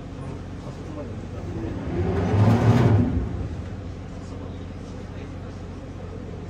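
Water rushing into a canal lock chamber through openings in the upstream wall as the lock fills, over the steady low hum of a tour boat's idling engine. A louder swell rises and fades about two to three seconds in.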